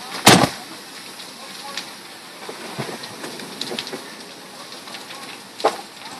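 Burning garage in a fully involved house fire, with faint scattered crackles and two sharp loud pops. The first pop comes just after the start and is the loudest; the second comes near the end.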